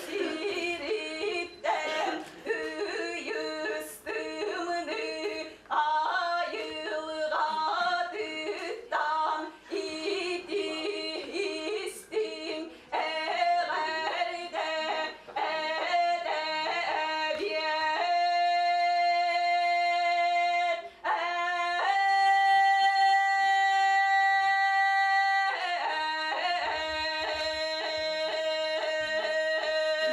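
A solo voice singing Yakut toyuk, the melody broken up by kylyhakh: quick throat flips and grace notes between pitches. About two-thirds of the way through, it holds two long, steady notes before the ornamented line resumes.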